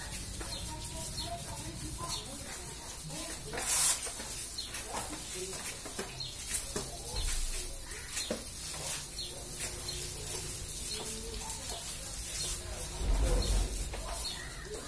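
Background birds chirping, with scattered short swishes and knocks from a long-handled floor squeegee working water across a wet tiled floor. There is one louder swish about four seconds in and a low rumble near the end.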